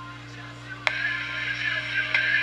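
Low steady electrical hum. About a second in, a sharp click, then a louder, steady high-pitched hiss and whine as the USB capture device's audio starts playing through the laptop speaker.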